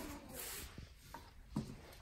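Faint rubbing and a few light taps of a wooden stick spreading resin over carbon fiber cloth laid on plastic sheeting, with a brief hiss in the first half second.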